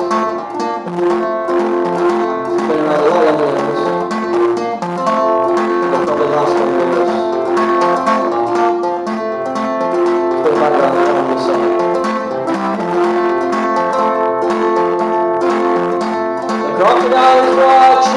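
Solo acoustic guitar played in an instrumental passage, picked notes over steadily ringing chords.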